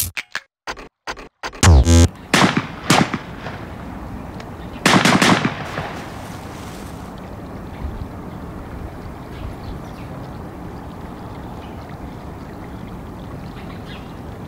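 Cut-up sound effects: a stutter of chopped sounds, then loud hits that each fade away, the loudest about five seconds in. After that comes a steady wash of flowing-water ambience, like running water heard underwater in a stream.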